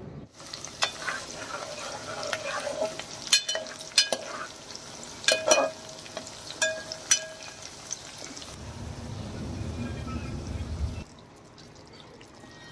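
Sliced onions frying in hot oil in an aluminium pot, sizzling steadily, while a steel spoon stirs them and clinks sharply against the pot several times. Near the end the sizzle gives way to a low rumbling noise for a couple of seconds.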